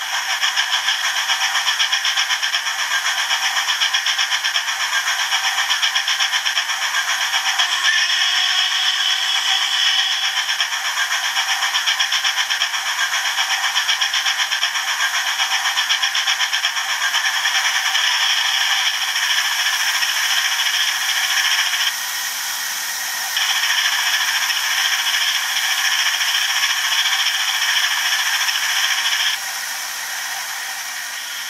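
Hornby TTS sound decoder's Princess Coronation steam locomotive sound played through the OO gauge model's small onboard speaker: fast, even exhaust chuffs with hiss, thin and without bass. The chuffing drops back for a second or so about two-thirds of the way through, then picks up again, and it falls away to a quieter hiss just before the end.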